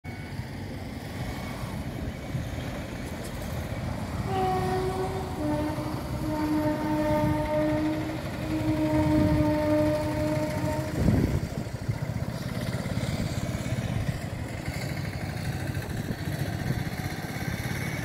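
Steady road traffic rumble, with a vehicle horn sounding in several long, steady blasts from about four seconds in until about eleven seconds, followed by a brief low thump.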